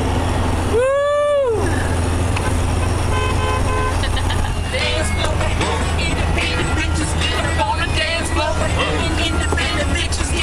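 Steady low road and engine drone inside a moving car's cabin, with men vocalising and singing along over music. About a second in there is a brief pitched tone that rises and falls, and a few seconds in a short steady tone.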